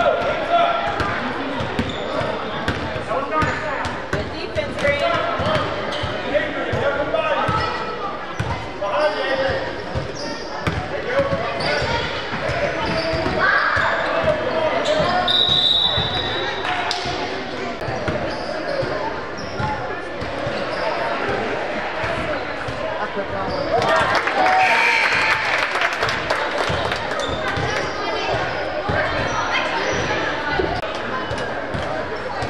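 Basketball bouncing on a hardwood gym floor during a youth game, under indistinct voices of players and spectators in an echoing gym. The voices get louder about three-quarters of the way through.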